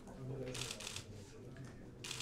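Press camera shutters clicking: a quick run of several clicks about half a second in, then a fainter click later, over low voices in the room.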